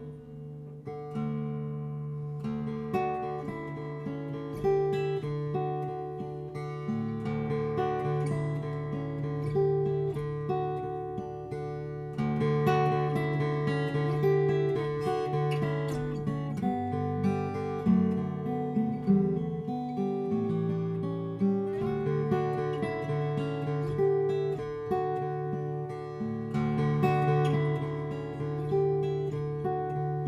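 Solo cutaway acoustic guitar playing a song's instrumental intro: a steady, rhythmic pattern of picked chords that changes chord every couple of seconds.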